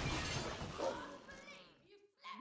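Glass shattering in the cartoon's soundtrack: a sudden crash that tails off over about a second and a half.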